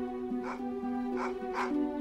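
A dog barking three times in short calls over a background music score of long held notes.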